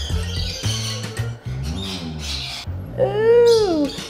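Children's background music with a steady repeating bass line. Near the end comes a loud, drawn-out, high cry lasting about a second, rising and then falling in pitch.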